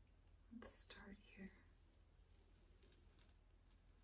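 Near silence: room tone with a steady low hum, and a brief faint murmur of a voice about half a second in.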